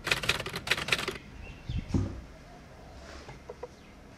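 Metal door knob and latch rattling with a quick run of clicks for about a second as a door is opened, followed by a dull thump about two seconds in.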